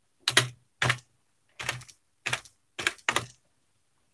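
Slow keystrokes on a computer keyboard: about six separate key presses, unevenly spaced.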